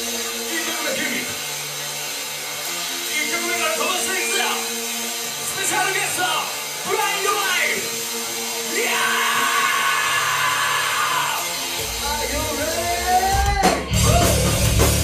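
Live metalcore band: sustained guitar chords ringing with no drums, while the vocalist shouts into the microphone. Near the end the bass comes up, a rising note leads in, and the full band with drums crashes in.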